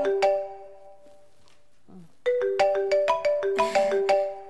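Mobile phone ringing with a melodic ringtone of bright, ringing notes. The tune breaks off shortly after the start and comes round again about two seconds later.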